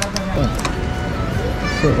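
People talking nearby over a steady low rumble of street and vehicle noise, with some music in the mix.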